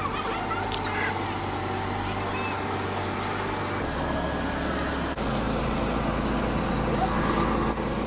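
Car engine and road rumble heard from inside the cabin as the car moves slowly. It is a steady low hum that shifts lower twice around the middle, with faint voices in the distance.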